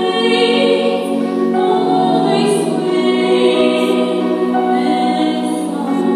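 Gospel choir singing in a church, several voice parts holding long notes that change chord every second or so.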